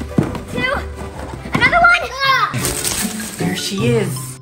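Children's voices calling and exclaiming without clear words over background music. A brief bright hiss comes about two and a half seconds in.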